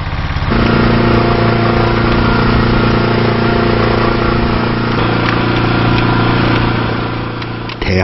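Motor on a small fishing boat running steadily with a low, even hum. It grows louder about half a second in and eases off slightly near the end.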